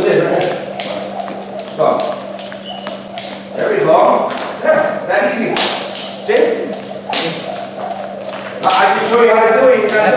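A jump rope slapping the gym floor in a quick, steady rhythm as someone skips.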